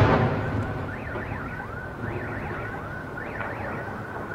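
The rumbling tail of a large explosion dies away over the first second. Car alarms then go off, a repeating warble of rising and falling tones.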